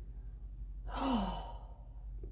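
A woman sighs once, about a second in: a breathy exhale whose voice falls in pitch.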